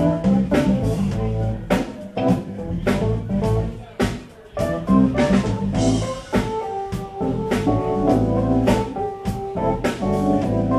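Live smooth jazz trio playing: bass, keyboards and drum kit, with drum strokes on a steady beat under held bass and keyboard notes.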